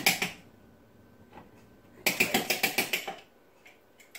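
A utensil clicking rapidly against a container as ghee is spooned into a blender cup: a short run of quick taps, about eight a second, dies away just after the start, and a second run of about a second comes roughly halfway through. She calls the noise "really obnoxiously loud."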